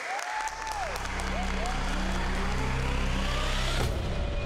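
A small group clapping and whooping. Beneath it a low music swell builds and rises in pitch, then cuts off suddenly just before the end.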